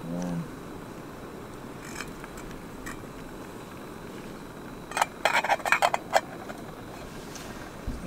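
Metal cook pot lid clattering onto a titanium camp pot: a quick run of sharp metallic clinks about five seconds in, lasting about a second, over a steady background hiss.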